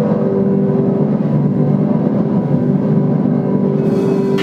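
Live electronic noise music: a loud, dense droning rumble of sustained low tones from laptop and effects-pedal electronics, without a beat.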